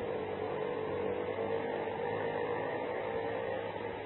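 Steady background hum and hiss in a pause between speech, with a constant mid-pitched tone running through it.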